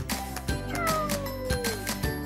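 A cat's meow: one long call that falls in pitch, starting just under a second in, over background music with a steady beat.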